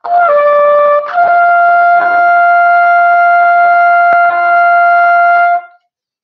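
Cornet playing a high note, at least an octave above its low C: a short slightly lower lead-in note, then one steady held note of about four and a half seconds that stops shortly before the end.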